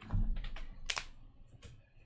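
A few separate clicks on a computer keyboard, irregularly spaced, after a dull low knock at the start.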